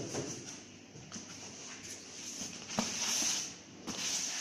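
Foam-packed ECG machine being lifted out of its box and set on a desk: foam packing blocks rubbing and rustling, with a couple of light knocks, about a second in and near three seconds.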